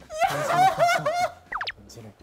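A young man's high-pitched, squealing laughter, followed by a brief rising squeak about a second and a half in.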